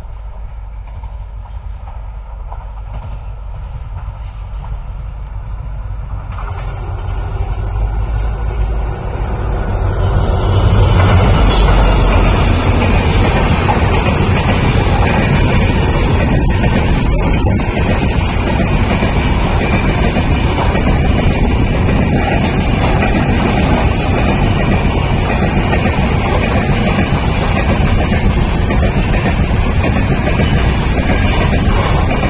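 Diesel-hauled passenger express train approaching and passing. A low rumble builds over the first ten seconds and is loudest as the locomotive goes by. After that a long rake of coaches rolls past with steady wheel noise and rail clatter.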